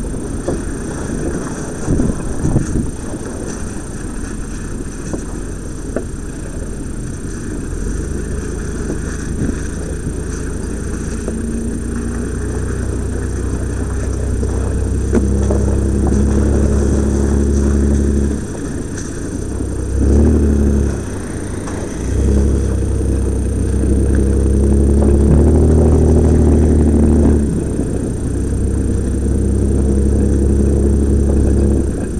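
Off-road 4x4's engine running under load, heard from inside the cab on a rough track, with a couple of jolts early on. From about halfway the engine note rises and holds, dropping away briefly twice before picking up again, as the throttle is eased off and reapplied.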